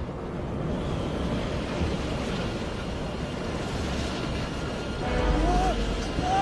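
Rushing wind of a free fall through the air, growing steadily louder, with music underneath. About five seconds in, a deep rumble comes in along with wavering pitched sounds.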